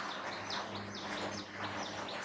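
Whiteboard marker squeaking in a quick series of short, falling chirps as a word is written, over a faint steady low hum.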